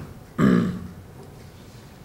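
A person's single short laugh about half a second in, falling in pitch, over quiet room tone.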